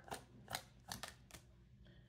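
Tarot cards being shuffled by hand, about five faint short snaps of the cards in the first second and a half, then near quiet.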